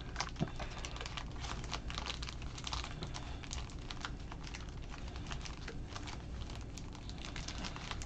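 Foil-wrapped Panini Prizm Draft trading card packs being shuffled in the hands: a continuous, irregular crinkling and rustling of the foil wrappers.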